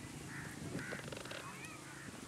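Birds calling: a run of short, arched calls repeated about twice a second.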